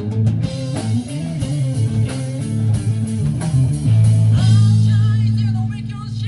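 Live blues-rock band playing loudly: electric guitar, bass guitar and drum kit together. About four seconds in, the band holds a long chord, which eases off near the end.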